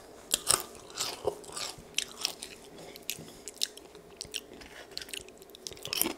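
A person chewing a mouthful of food with the mouth closed, close to the microphone: a run of small, irregular clicks and crunches.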